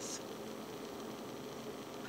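Steady faint hiss of background noise with no distinct event.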